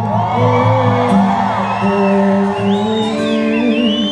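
Live band holding a sustained chord at the end of a song while the audience cheers and whoops.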